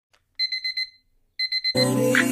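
An electronic alarm beeping: two short bursts of rapid high-pitched beeps with a pause between them. A song starts near the end.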